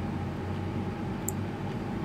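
Steady low hum and hiss of background noise, with one faint click about a second and a quarter in.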